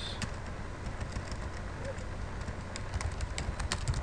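Computer keyboard being typed on: irregular keystroke clicks, sometimes several in quick succession, over a low steady background hum.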